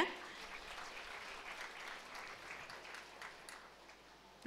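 Audience applauding, faint, thinning out and dying away near the end.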